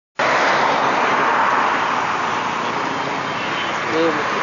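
A car passing on an expressway: steady tyre and road noise, loudest in the first second and a half and easing a little as it moves away.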